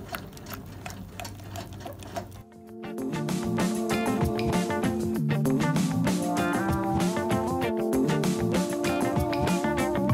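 Background music that starts about two and a half seconds in and carries on, loud. Before it, a quiet stretch with faint scraping of a silicone spatula stirring thick chocolate mixture in a metal saucepan.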